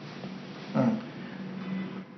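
A pause in a man's talk: faint room tone with a steady low hum, broken by one short voiced sound from the speaker a little under a second in.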